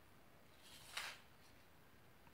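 A single brief scrape on a painted wall from a pencil and aluminium straightedge, lasting about half a second and sharpest about a second in, against near silence.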